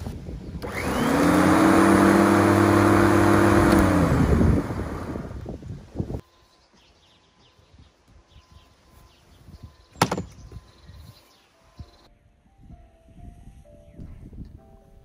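Parkside electric lawn mower's motor spinning up, running steadily for about three seconds, then switched off and winding down with a falling pitch. About ten seconds in comes a single sharp knock, and faint music near the end.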